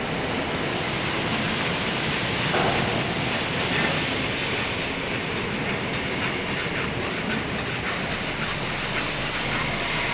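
Electric arc welding on a butt weld in steel plate: a steady frying crackle of the arc that runs unbroken, with no pauses between runs.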